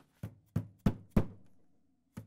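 Plastic hammer tapping a new freezer door gasket into the groove of the door liner: four sharp knocks in quick succession, the first one softer.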